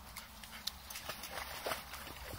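Springer spaniel paddling through a shallow stream, making scattered small irregular splashes in the water.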